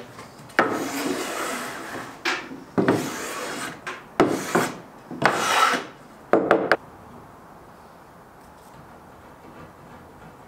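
Wood scraping on wood: boards being slid and dragged across a wooden workbench top in about five strokes, each half a second to a second and a half long.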